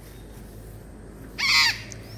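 A parrot gives one short, harsh, loud squawk about one and a half seconds in.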